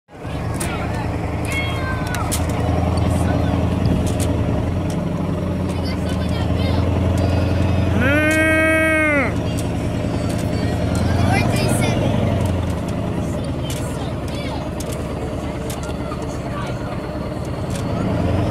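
Monster truck's engine running steadily as it drives along, with scattered knocks and rattles. About eight seconds in, one loud held pitched note lasts about a second.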